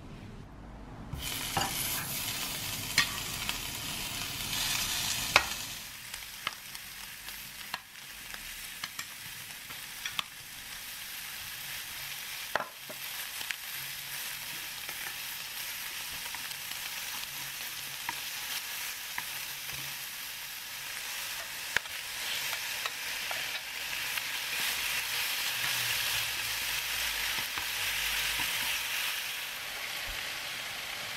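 Pork belly pieces sizzling as they fry in a nonstick pan, the sizzle starting about a second in and growing louder near the end as the pork fries with kimchi. Occasional sharp clicks of chopsticks against the pan.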